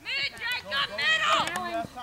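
Several people shouting at once, overlapping high-pitched calls and yells from players and sideline spectators during play in a soccer match.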